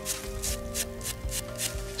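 Brush scrubbing soil off a rusted, dug-up knife blade in quick strokes, about five a second, with background music underneath.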